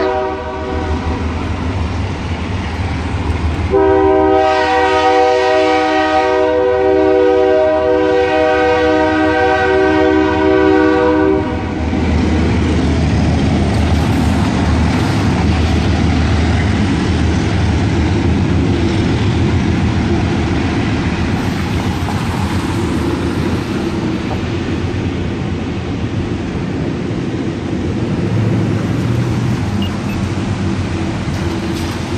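Arkansas & Missouri ALCO diesel locomotive's air horn: a short blast ending right at the start, then one long blast of about eight seconds. After the horn stops, the train's steady low rumble continues as it rolls past.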